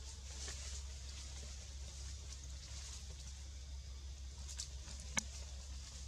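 Steady low outdoor background rumble with a faint hiss, broken by a few sharp clicks or snaps in the second half, one of them clearly louder than the rest.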